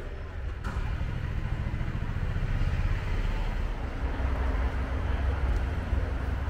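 Low rumble of a car engine running, growing louder about a second in, over a faint murmur of voices.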